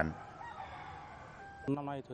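A rooster crowing faintly: one long call, drawn out and held steady before it stops.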